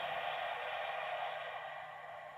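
Faint, steady background hiss of room tone that slowly fades, with no distinct knocks or handling sounds.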